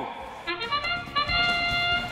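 A field horn sounds the start of a robotics match: a short trumpet fanfare. It begins about half a second in, moves through a couple of notes and ends on a long held note.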